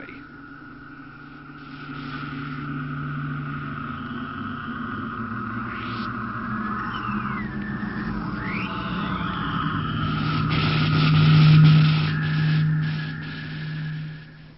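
Old tube radio warming up and being tuned: a steady low hum and a high steady tone over static, with short whistling squeals that glide in pitch in the middle as the dial is turned. The hum swells loudest near the end, then fades.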